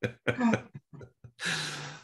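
A man laughing in short bursts, then a single harsh cough or throat-clear about halfway through that trails off.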